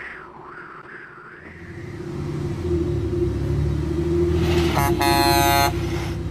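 A motor vehicle's engine rumble builds up, and near the end a vehicle horn blasts once for about a second. A faint wavering high tone is heard in the first second or so.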